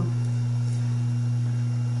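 Steady electrical mains hum: one low tone with a fainter tone an octave above, holding at an even level.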